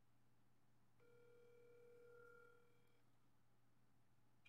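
Telephone ringback tone of an outgoing call, heard faintly from a phone: one steady ring about two seconds long, starting about a second in.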